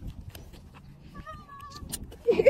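An animal's call: one thin, wavering cry lasting about half a second, a little past halfway through, over faint background noise.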